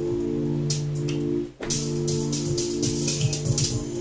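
Electronic beat played live on synth keyboard and pad controller: a held chord with quick high percussion ticks over it. The sound cuts out for a moment about halfway through, then the chord and beat come straight back.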